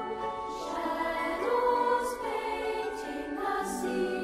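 Background music: a choir singing slow, held notes, with a few soft 's' sounds.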